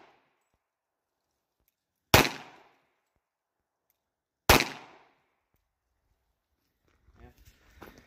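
Two single gunshots from a Tisas 1911A1 Service .45 ACP pistol, fired slowly, about two and a third seconds apart. Each is a sharp crack with a short echoing tail.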